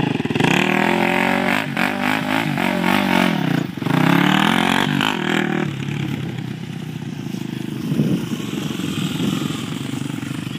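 Predator four-wheeler's engine revving hard again and again, its pitch rising and falling as the quad spins its wheels in the mud. About six seconds in it eases off to a lower, quieter run.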